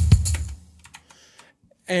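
Cubase Groove Agent drum pattern playing a last few kick and snare hits, then stopping about half a second in, followed by a few faint clicks.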